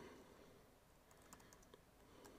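Faint typing on a computer keyboard: a few soft, scattered keystrokes, most of them after about a second, over quiet room tone.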